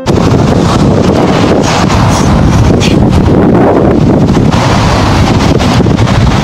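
Loud, steady wind buffeting the camera microphone, a deep rumbling noise with no break.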